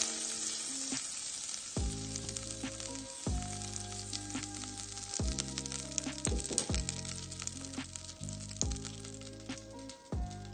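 Butter sizzling and crackling as it melts and bubbles in a stainless steel saucepan, over background music with a steady bass beat.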